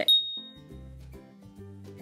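A single bright ding sound effect right at the start, ringing out and fading over about half a second, over quiet background music with a soft bass line.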